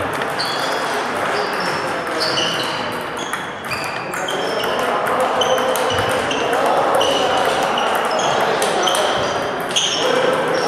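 Table tennis balls ticking off tables and bats in several rallies at once: a dense, irregular patter of short, high pings.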